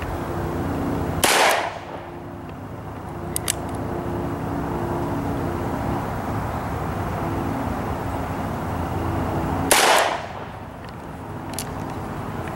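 Two shots from a stainless six-inch Ruger GP100 revolver, about eight seconds apart, the first a second in and the second near the end. A steady low drone runs underneath, with light clicks a couple of seconds after each shot.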